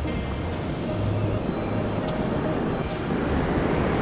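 Small waves washing up over a sand beach, a steady rushing noise that swells a little toward the end, with faint background music.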